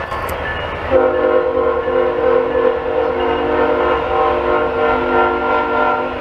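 Freight locomotive air horn sounding one long chord for about five seconds, starting about a second in, over a low rumble from the train: a horn salute from the engineer.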